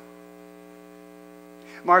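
Steady electrical mains hum, a constant buzz with several even pitches, carried through the audio system. A man's voice starts near the end.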